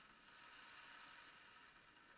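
Ocean drum tilted slowly, its beads rolling across the head in a very faint, steady hiss.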